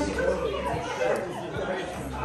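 Indistinct chatter of a group of people talking over one another in a room, with no single voice standing out.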